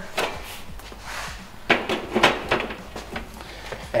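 Metal knocks and clunks of a copper candy kettle being handled on a gas burner stand, the loudest cluster about two seconds in.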